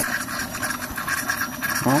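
Electric in-tank fuel pump running in a nearly emptied bucket of kerosene, sucking air and making a rough, rapidly fluttering rasp. This is the weird noise of a fuel pump starting to run dry.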